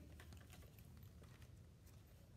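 Near silence: room tone with a faint low hum and a few faint scattered ticks.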